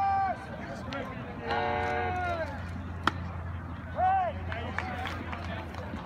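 Voices yelling long drawn-out calls across a ballpark, with a single sharp crack about three seconds in.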